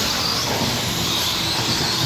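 Stock-class electric RC trucks racing on an indoor track: a steady rush of noise with a faint, wavering high-pitched motor whine.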